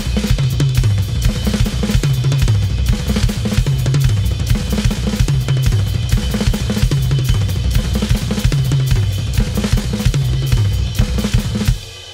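Drum kit played fast, a paradiddle-diddle pattern (right, left, right, right, left, left) run across the toms and snare, moving from 16th-note triplets into 32nd notes. Rapid strokes with a phrase that steps down in pitch across the toms and repeats about every one and a half to two seconds, stopping just before the end.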